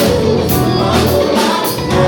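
Live gospel music: several voices singing together over a backing band, loud and steady.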